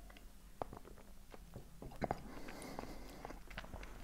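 Faint sipping and swallowing of a fizzy soft drink from a glass, with a few small clicks and soft knocks as the glass is handled and set down on the table.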